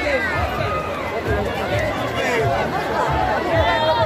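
Dense crowd of people talking and calling out at once, many voices overlapping close around the microphone, with no single speaker standing out.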